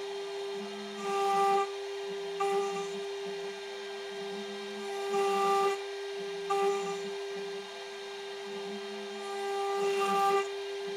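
CNC router spindle running with a steady whine while its end mill cuts into plywood. The sound grows louder in cutting passes about every four seconds, each a longer pass followed by a shorter one.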